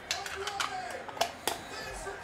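A few sharp clicks and taps of a hard clear plastic card holder being handled.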